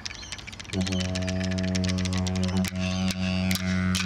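Didgeridoo starting a steady low drone about a second in, with clapsticks clicking quickly over it and then more slowly, about twice a second, near the end.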